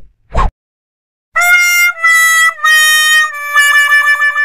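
The "wah wah wah" sad-trombone sound effect, the comic sign of failure: four descending brass notes, the last one held with a wobbling pitch. A short whoosh sounds just before it, near the start.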